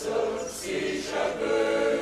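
A choir singing, the voices holding long chords.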